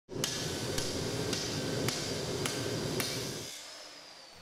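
Six evenly spaced hammer strikes, about two a second, each a sharp ringing hit, over a steady workshop background that fades out near the end.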